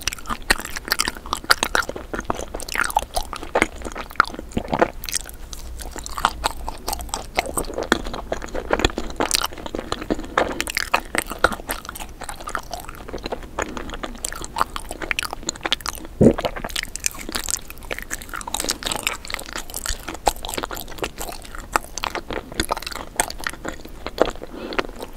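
Close-miked eating of a watermelon-look dessert with a green-striped shell and a red centre: bites and chewing, full of quick irregular small cracks and clicks.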